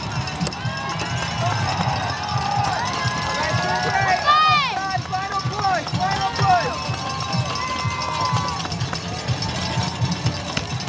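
Roadside crowd cheering and shouting encouragement to passing runners, many voices overlapping with rising-and-falling shouts, loudest about four to five seconds in.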